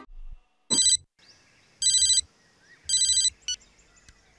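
Mobile phone ringtone: three short electronic ring bursts about a second apart, then a brief beep near the end.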